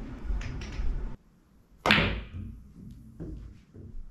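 A pool cue tip striking a ball for a medium-speed bank shot: one sharp crack about two seconds in, followed by fainter knocks as the ball comes off the cushions.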